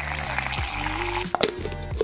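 Water pouring from a pitcher into a plastic shaker bottle, a steady splashing hiss for just over a second, over background music with a steady bass line. It is followed by a few sharp plastic clicks as the shaker's lid is pressed on.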